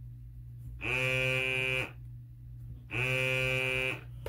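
Hadineeon automatic foaming soap dispenser's pump motor, set to high, running twice in steady buzzes of about a second each. It is trying to draw up thick regular hand soap that it cannot suction, so it runs without dispensing foam.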